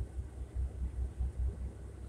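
Low rumble of a semi truck's diesel engine idling, heard inside the sleeper cab, pulsing a few times a second.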